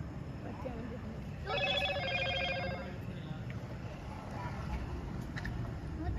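A trilling electronic ring, like a phone ringing, starting about one and a half seconds in and lasting about a second and a half, over faint voices and low background noise.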